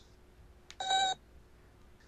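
A single short electronic beep about a second in, a cartoon robot's beeping voice, with a faint click just before it.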